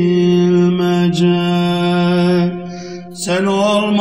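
Male voice singing a Turkish ilahi (Islamic hymn) without instruments. It holds one long note that fades out about two and a half seconds in, and a new phrase begins just over three seconds in.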